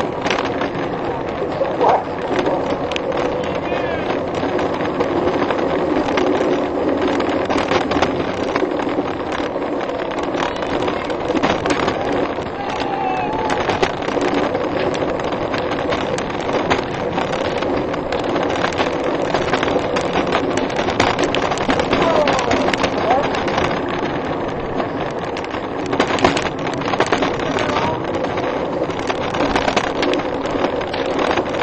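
Wheels of a coffin-shaped gravity racing cart rolling fast downhill on asphalt: a continuous rumble and hum with frequent rattles and knocks from the bumps.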